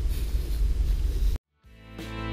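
Low rumble of wind on the microphone that cuts off abruptly about a second and a half in. After a moment of silence, background music fades in.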